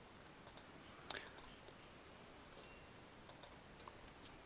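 Faint computer mouse clicks over near-silent room tone: a pair about half a second in, a few more about a second in, and another pair near the end.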